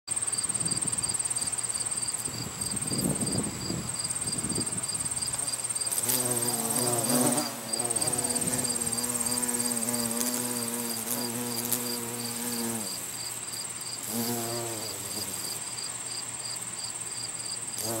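Carpenter bee buzzing in flight close by, a low steady hum that comes in about six seconds in and holds for some seven seconds, returns briefly near fifteen seconds and again at the end. Under it, insects trill and chirp steadily at a high pitch.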